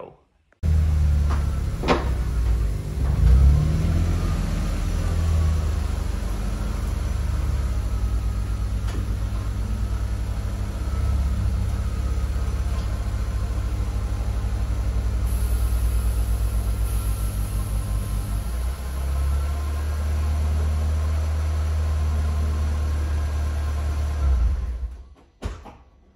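Mk1 Volkswagen Golf GTI engine running with a steady low drone, with a single knock about two seconds in and a shift in the drone's pitch about two-thirds of the way through.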